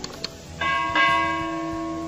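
Two quick mouse-click sound effects, then a chiming bell sound effect struck about half a second in and again a moment later, ringing on.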